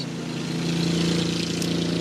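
Lawn mower engine running steadily, a loud even hum.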